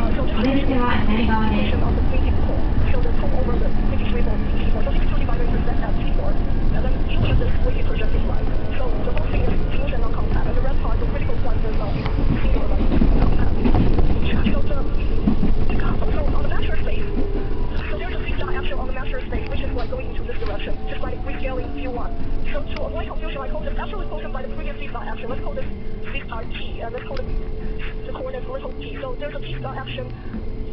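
Electric commuter train heard from inside the carriage: a steady rumble of wheels on rails. In the second half a motor whine glides down in pitch and the noise eases as the train slows.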